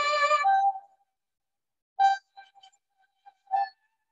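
Electronic wind instrument playing a melody: a held, reedy note that ends about half a second in and steps down to a lower note, then after a short gap a few brief, separated notes.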